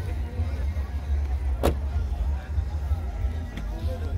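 Music with heavy deep bass played through a trio of 10-inch Carbon Audio subwoofers in a vented box, heard from outside the car. There is one sharp click about one and a half seconds in.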